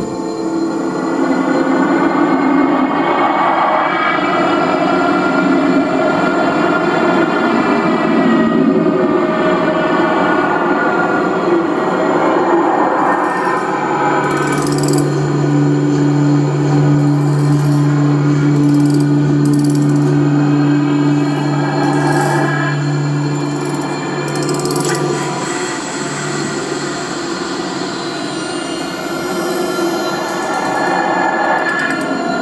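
Live experimental electronic music: dense layered drones with slowly gliding, shifting tones. About halfway through, a strong steady low drone comes in and holds for about ten seconds before fading.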